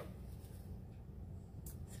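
Faint rubbing and rustling as a mousepad is handled and held up, over a low steady room hum, with a brief faint scrape near the end.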